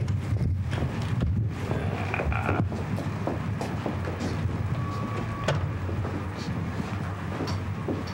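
Footsteps of several people walking, a run of irregular knocks over a steady low hum, with a brief steady tone about five seconds in.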